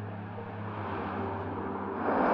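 Steady low rumble of distant traffic. The last faint notes of a music drone fade out in the first second.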